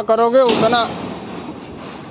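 A voice calling out briefly during the first second, then only a steady background noise.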